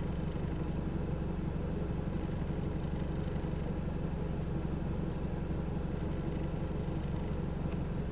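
Steady low hum of an idling vehicle engine, unchanging throughout.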